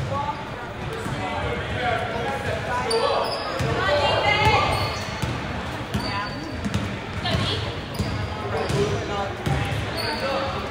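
Basketball dribbled on a hardwood gym floor during play, with players and spectators calling out and talking.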